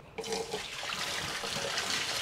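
Water poured from a plastic bucket into the tub of a portable semi-automatic washing machine, a steady splashing that starts just after the beginning and slowly grows louder.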